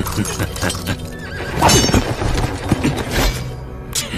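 Sword-fight sound effects: blades clashing and scraping in quick strikes, with a horse whinnying in the middle, over dramatic background music.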